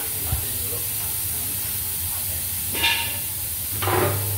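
Steady hiss over a low hum from workshop machinery running, with a short higher-pitched sound about three seconds in.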